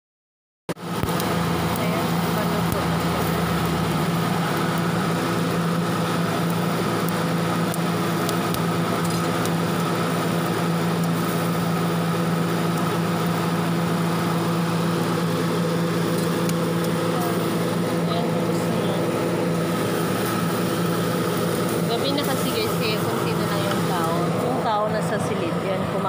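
A steady engine hum at idle, with street noise. Voices come in near the end.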